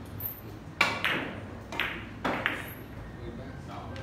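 Carom billiard balls clicking together during a shot: about five sharp, ringing clicks within two seconds, the first the loudest.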